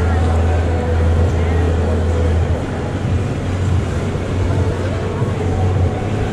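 Food-stall ambience: a steady low hum with people talking in the background.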